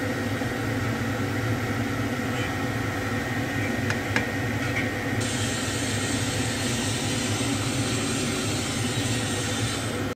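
Steady hum and whir of a running kitchen appliance fan, with two light clicks about four seconds in.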